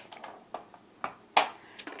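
A few light taps and clicks of stamping supplies being handled and set down on a work surface, the sharpest about one and a half seconds in.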